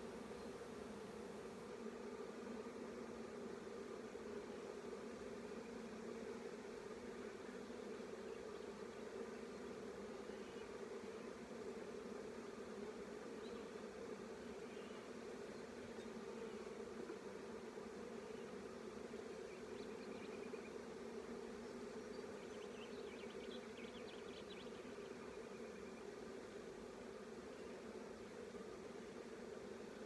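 Honeybees humming around an opened hive: a faint, steady low drone that holds one pitch throughout.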